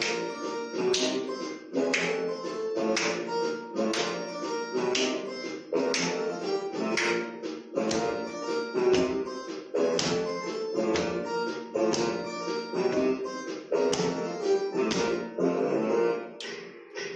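Instrumental music with a steady beat, with sharp hand claps keeping time about once a second.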